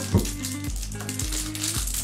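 Crinkly foil wrapper being pulled open and crumpled by hand, a continuous crackling, over background music.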